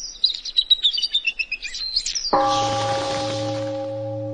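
Small birds chirping in quick, high-pitched twitters, then a deep bell struck once a little over two seconds in, its tone ringing on steadily and slowly fading.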